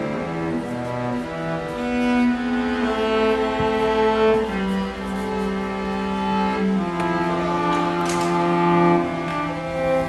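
String quartet of two violins, viola and cello playing long, sustained bowed notes, the cello holding low notes beneath the upper strings.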